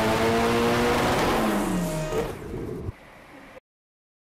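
Turbocharged 1.8T four-cylinder (AWP with a GTX3582 turbo) of a Mk4 Volkswagen running at full throttle on a chassis dyno, its pitch climbing slowly under load. About two seconds in it comes off the throttle and the pitch falls away, then the sound cuts out shortly before the end.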